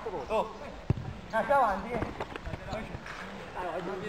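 Men's voices shouting in short calls across a small-sided football pitch, with a single sharp thud a little under a second in.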